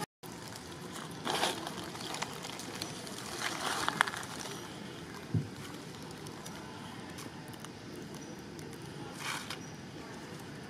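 Steady outdoor background noise with a few brief rustles, a sharp click about four seconds in and a soft low thump a moment later.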